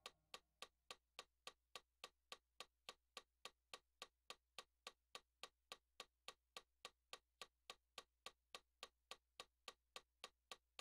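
Faint, evenly spaced metronome clicks, a little under three a second, with no other sound between them.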